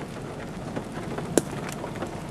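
Steady rain noise with one sharp tap a little after halfway through, a hailstone striking, as hail begins to fall in the tornado's storm.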